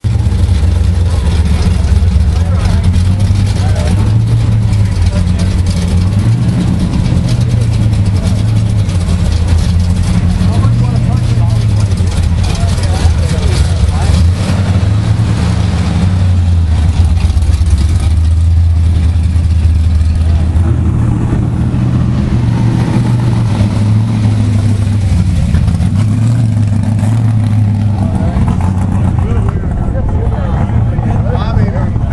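Chevrolet Chevelle's engine running close by with a deep, steady rumble, its pitch rising and falling slightly now and then as it is revved lightly.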